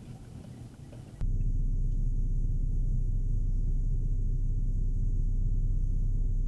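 Loud, steady low rumble of a vehicle heard from inside its cabin, starting abruptly about a second in after a quieter opening.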